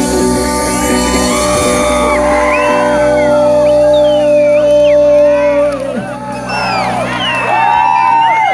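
Live reggae band holding a sustained closing chord that cuts off about six seconds in, with the audience whooping and shouting over it and on after it ends.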